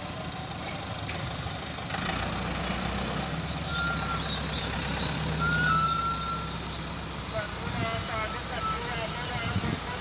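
Massey Ferguson 385 tractor's diesel engine running, its revs rising about two seconds in and held for several seconds before easing back. Voices of onlookers over it.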